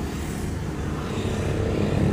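A motorcycle passing on the road, its engine running steadily with a mostly low-pitched sound.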